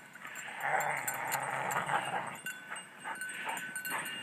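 A dog panting and pushing through deep snow as it runs back with a frisbee: a rough, steady hiss for the first couple of seconds, then short irregular scuffs.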